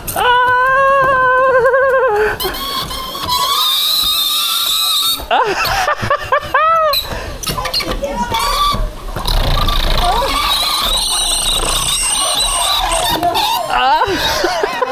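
Rider sliding fast down a long metal-and-glass chute slide: a continuous rushing, rubbing noise of the ride, with long, wavering high-pitched squeals. The loudest squeal comes in the first two seconds, and a short run of rising-and-falling squeals comes about halfway through.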